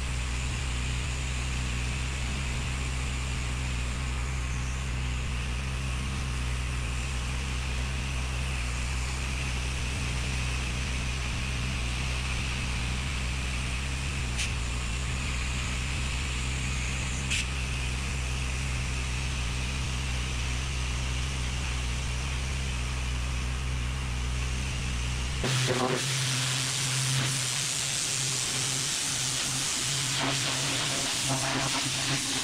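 Pressure-washing equipment running with a steady low hum while water sprays from a hose wand. About 25 seconds in, the sound changes abruptly to a louder, hissing spray of water.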